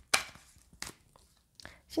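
Tarot cards shuffled by hand: three short card slaps and taps with quiet pauses between.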